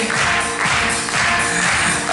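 Live pop band playing the song's accompaniment between sung lines: drums with a steady wash of cymbals over sustained keyboard chords.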